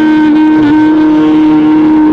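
Clarinet holding one long, steady note in a Hindustani classical raga, with a brief slight dip in pitch less than a second in, over a steady lower drone.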